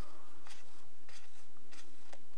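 Soft scratchy rustles of a sewing needle and thread being drawn through a label and fluffy microfiber knitting, three brief strokes a little over half a second apart.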